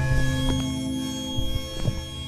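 Background music: several sustained tones held steady, with a few soft short strikes.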